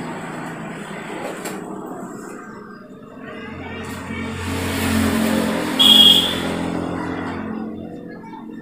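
A motor vehicle passing by, its engine hum swelling to a peak about six seconds in and then fading, with a brief high tone at its loudest moment.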